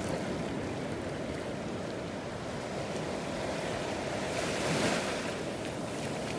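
Small waves lapping and washing up on a sandy beach, a steady wash with one louder wash of hiss near the end.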